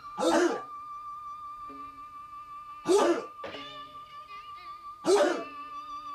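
Group of Hapkido students shouting kihap in unison as they strike through a form: three short, sharp shouts about two seconds apart. Background music with a long held tone runs underneath.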